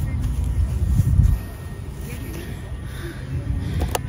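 Wind buffeting the camera's microphone: a low, uneven rumble that is strongest in the first second and a half, with a sharp click just before the end.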